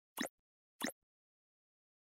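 Two short sound-effect blips from an animated logo end card, about two-thirds of a second apart.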